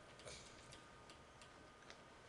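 Near silence with a few faint, unevenly spaced clicks of a stylus tapping on a tablet PC screen as it writes.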